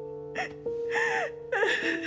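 A woman crying hard: gasping breaths and sobs with a wavering pitch, three outbursts with the loudest near the end. Soft background music with held notes plays under them.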